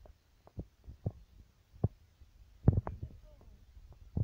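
A few irregular soft thumps and knocks from plastic bottles of dishwashing liquid being handled, with the loudest cluster near the end.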